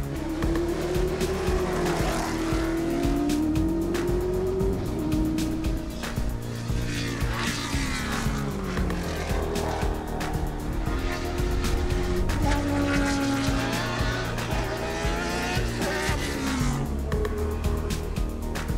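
Ensign N180B Formula One car's Cosworth DFV V8 driven at racing speed, its pitch climbing through the revs and dropping again several times as it changes gear and takes corners, over background music.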